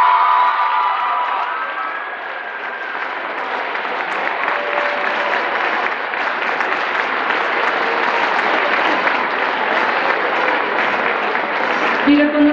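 Audience applauding, a dense even patter of many hands clapping that dips slightly a couple of seconds in and then builds again.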